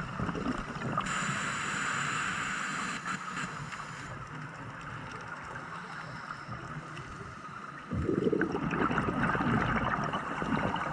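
Scuba diver breathing through a regulator underwater: a hissing inhale with a faint whistle starting about a second in and lasting about three seconds, then a bubbling exhale near the end.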